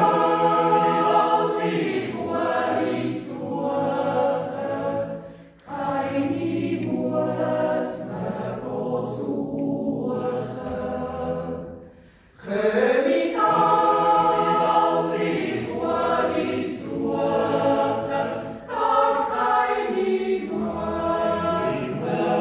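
Mixed yodel choir of men and women singing a cappella in sustained close harmony, in long phrases with short breaks about six and twelve seconds in.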